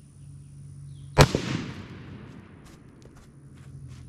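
A single rifle shot about a second in, a sharp crack fired into a ballistic gel block, dying away in an echo over about a second. A few faint ticks follow.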